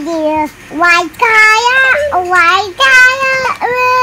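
A child's voice singing a nursery-rhyme tune in held, high notes with short breaks between them.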